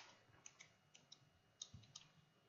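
Faint, irregular clicks of a computer mouse wheel scrolling through a list, several over two seconds.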